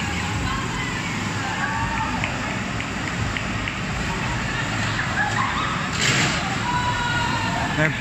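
Go-karts running round a covered track, their motors whining and rising and falling in pitch as they pass, over a steady rumble of noise. A brief louder rush comes about six seconds in.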